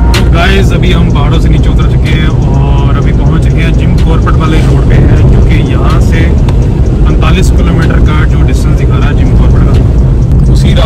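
Road and engine noise of a small car driving, heard inside its cabin as a loud steady low rumble, with a man talking over it.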